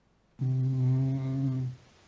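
A man's voice holding a drawn-out "mmm" of hesitation, one steady low note about a second long, while he thinks over what to do.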